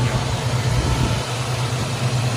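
1967 Chevrolet C10 pickup's engine idling steadily with the hood open.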